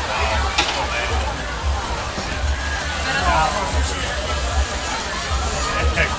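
Busy street-market hubbub: background crowd chatter and music, over a low, uneven rumble.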